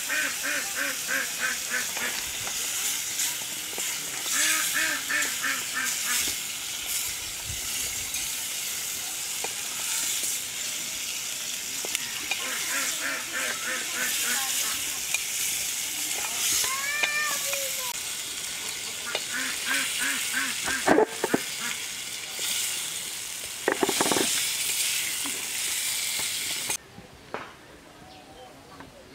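Fish and prawn curry sizzling in an aluminium pot over a wood fire as it is stirred with a wooden spatula. Bird calls in quick repeated bursts come in several times, and there are a couple of sharp knocks in the second half.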